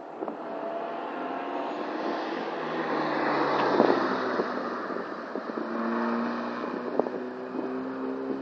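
Small hatchback's 1-litre engine running hard as the car drives past on the track, growing louder to a peak about four seconds in, then easing as it moves off with a steady engine note and tyre noise.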